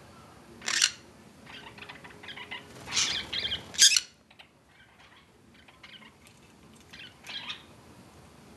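Lineolated parakeets giving short, scattered chirps, with a cluster of louder calls around three to four seconds in and a few more near the end.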